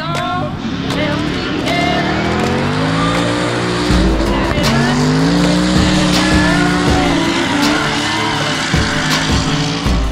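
Drift car engine revving hard, its pitch rising and falling over a second or two at a time as the car slides through the corner, with tyre squeal; music plays underneath.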